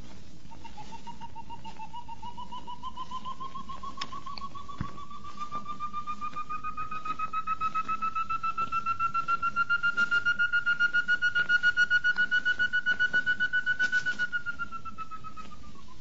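Song of the tovaca, a Chamaeza antthrush: one long run of short whistled notes, about four a second. The notes rise slowly in pitch and grow louder for some fourteen seconds, then drop briefly at the end. A steady hiss lies underneath.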